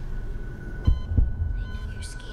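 Horror-film sound design: two deep thumps about a third of a second apart over a steady low rumble, with a faint high held tone.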